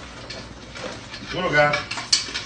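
Kitchen clatter: a steel stock pot and utensils being handled, with scattered clinks and knocks. A short voice rises about a second and a half in.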